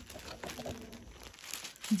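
Soft crinkling of clear plastic packaging and rustling of fabric as hands unfold and smooth a packed suit piece.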